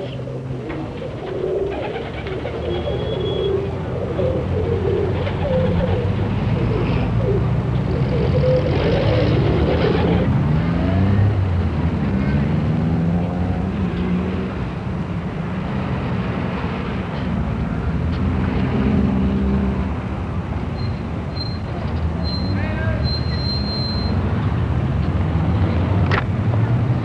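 City street traffic: car engines running and passing, some rising in pitch as they pull away and accelerate, over a steady street background.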